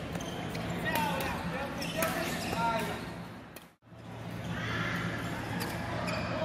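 Indoor badminton rally: sharp racket strikes on the shuttlecock and footwork on the court, with players' voices and a steady low hum beneath. The sound drops out for a moment a little past halfway, then the same kind of play resumes.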